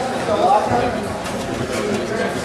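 Mostly speech: spectators and coaches talking and calling out over a steady background of chatter, with one voice standing out about half a second in.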